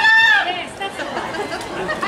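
A spectator's long, high-pitched shout of "Go!" cheering on a runner, fading out about half a second in. After it comes quieter background chatter from the crowd.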